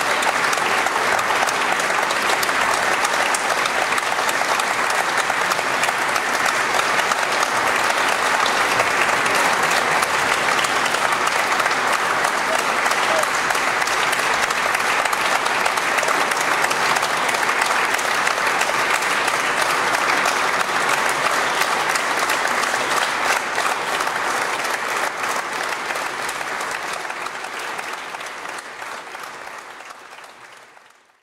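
Audience applauding, many hands clapping together in a dense, steady patter; it fades away over the last few seconds.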